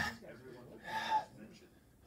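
A man's hard breaths during push-ups: a sharp, forceful exhale right at the start and another, longer breath about a second in.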